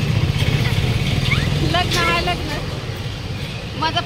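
Low rumble of a vehicle engine running, which weakens about two and a half seconds in, under women's voices.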